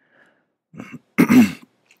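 A man clearing his throat: a short, softer rasp just before a second in, then one louder, harsher clearing.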